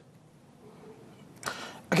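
A pause in studio talk with near-quiet room tone, then a short breathy rush of noise about one and a half seconds in, just before a man says "Okay".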